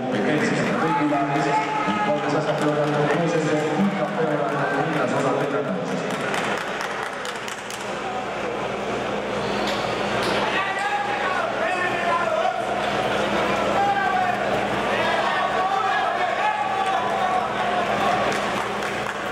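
Speech: voices talking, with a steady low hum that comes in about six seconds in.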